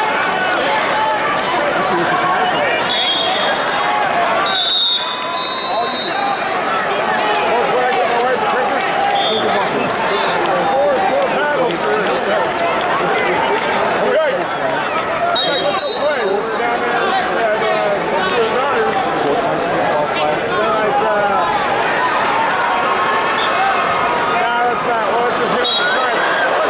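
Arena crowd chatter: many spectators' voices overlapping in a large hall, at a steady level. A few brief high-pitched tones cut through it.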